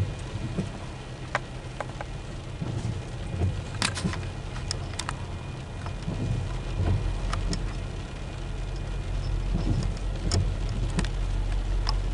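Rain falling on a car, with scattered irregular drop clicks, over a low diesel rumble that slowly grows louder in the second half. The rumble comes from a pair of VIA Rail GE P42DC locomotives approaching at about 10 mph.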